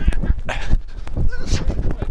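A body-worn microphone on a running footballer: repeated low thumps and rustle from footfalls and body movement, with short shouted calls or grunts that are not words.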